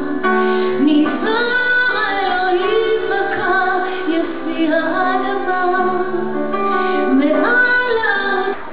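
A woman singing a slow Hebrew ballad in a live performance, her held, gliding melody carried over a small band's accompaniment.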